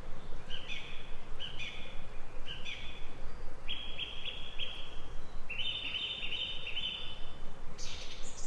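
A songbird singing in short repeated phrases: three brief ones, then two longer runs of quick notes. A steady hiss runs underneath, typical of a wildlife camera's built-in microphone.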